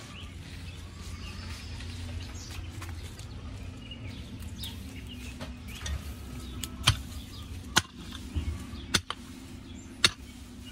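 A pick digging a hole in the soil, striking the ground four times in the second half with sharp knocks about a second apart. Chickens cluck now and then throughout.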